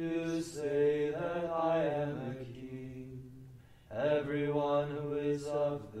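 Liturgical chant of the Divine Office: voices singing on long held notes, in two phrases with a brief break about four seconds in.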